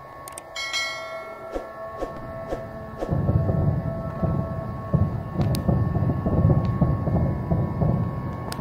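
Repeated bangs in the night sky like a fireworks barrage, with a low rumble under them. It begins as a few separate pops, then becomes a dense, continuous crackle about three seconds in. A faint steady high hum runs underneath.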